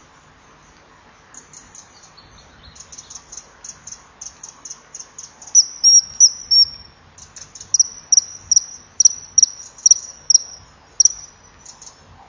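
Male common kingfisher giving a rapid series of shrill, high whistled calls, faint at first and much louder from about halfway, several notes a second. The calls are a territorial warning at another kingfisher.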